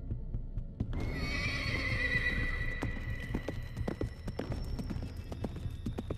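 A horse whinnying once, about a second in, its call falling slightly in pitch and fading, then hooves clip-clopping in irregular knocks over a steady low hum.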